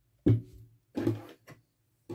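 Two soft knocks with rustling, about a quarter second and a second in, then a faint tap: objects and yarn being handled on a tabletop.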